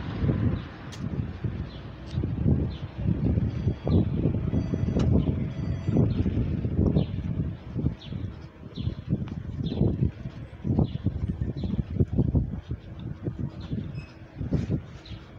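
Footsteps on a paved street at a walking pace, a little over one step a second, over uneven low rumbling from wind or handling on the phone microphone.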